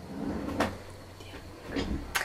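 A desk drawer sliding, with a short knock about half a second in and a fainter one near the end.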